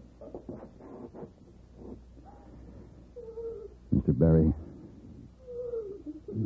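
A woman sobbing and wailing, with high gliding cries and one louder, drawn-out cry about four seconds in.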